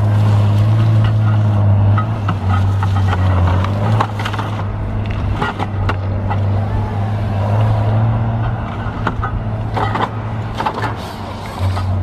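Heavy-equipment diesel engine running steadily close by with a low, even hum, with occasional short knocks and clanks over it.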